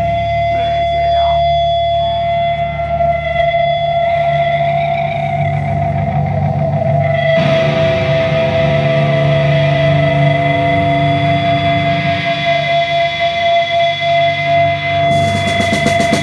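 Black metal band playing live, electric guitars and bass holding one sustained droning note that rings throughout. About seven and a half seconds in the sound grows fuller, and near the end a wash of cymbals comes in.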